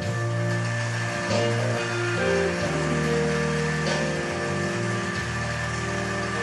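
Live band playing an instrumental break in a slow ballad: held chords over a bass line that changes every second or so, with no singing.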